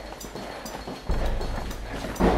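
Footsteps at walking pace on a debris-strewn hard floor, about two steps a second. A low rumble comes in about a second in.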